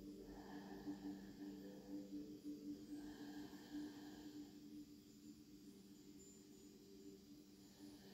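Very quiet: a faint steady low hum, with two slow, soft breaths in the first half as the channeler settles into the session.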